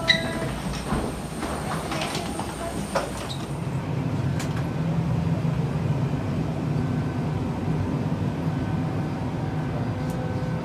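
Steady low hum of an airliner cabin's ventilation, stronger from about four seconds in. In the first three seconds a few knocks and clatters come from footsteps and a wheeled suitcase crossing the aircraft door.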